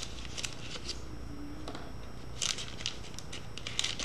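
A small cardboard packet of paper blending tortillons being handled and pulled open, giving short crackly rustles about half a second in and again about two and a half seconds in.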